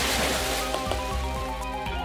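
A big water splash, a sudden rush of spray that dies away over about half a second, over background music.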